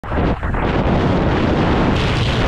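Wind rushing over an action camera's microphone, with tyre rumble, as a mountain bike descends a steep concrete spillway at speed; the noise dips briefly about half a second in.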